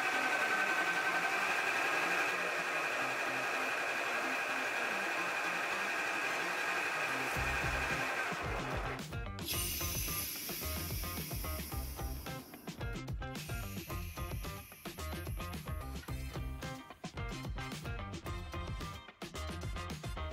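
A motor-driven, 3D-printed six-cylinder radial compressor runs with a steady whine as a two-stage vacuum pump, pulling a vacuum on a jar. About nine seconds in, background music with a low beat takes over.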